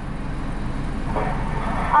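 Steady low rumble of a Mercedes-Benz car idling, heard from inside the cabin with the window open.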